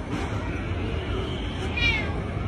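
A domestic cat gives one short, high meow that falls in pitch near the end, over a steady low background hum.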